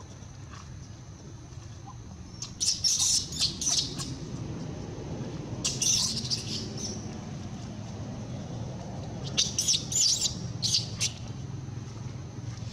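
Infant macaque giving high-pitched squeaks and squeals in three short bursts of rapid calls, about two and a half, six and nine and a half seconds in.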